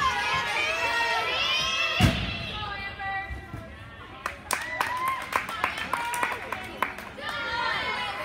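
Crowd voices and cheering echo in a large gym. About two seconds in, one heavy thud sounds as the gymnast lands on the wooden balance beam. In the second half come scattered sharp, irregular taps.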